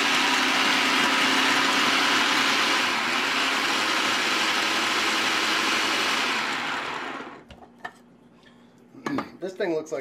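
Residential food processor running, its blade grinding cored apple pieces into a fine, near-liquid pulp, steady and loud; it is switched off about seven seconds in and spins down. A few light knocks and a voice follow near the end.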